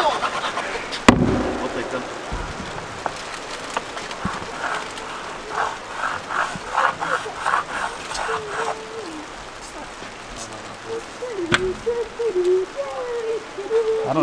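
PVC pipe and elbow fitting being handled and knocked: one sharp knock about a second in, a run of short quick strokes in the middle, and another knock near the end.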